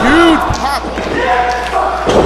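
One thud of a wrestler's body hitting the ring canvas about half a second in, with voices shouting around it.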